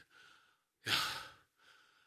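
A man sighing once: a single breathy exhale about a second in, without voice.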